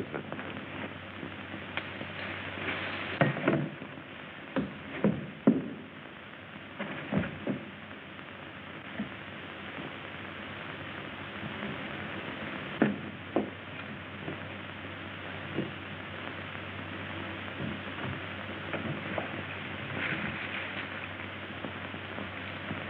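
Leaves and branches rustling, with a scattered run of sharp snaps and cracks, as a man pushes through shrubbery. Under it runs the steady hiss and hum of an old optical film soundtrack.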